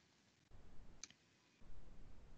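Near silence with a faint low hum, broken by one short click about a second in.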